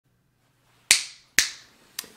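Two finger snaps about half a second apart, each sharp and dying away quickly, with a fainter click at the very end.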